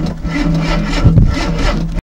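A small engine idling just after being started: a steady low hum with uneven surges every few tenths of a second.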